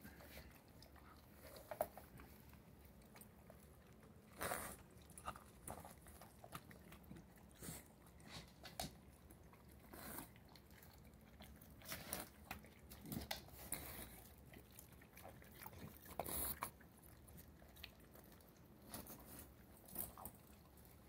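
Two dogs biting and gnawing kernels off a corn cob held in a hand, with soft, irregular crunches every second or few.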